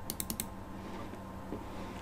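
Computer mouse button clicked rapidly, about four sharp clicks (two double-clicks) within the first half second, over a faint steady hum.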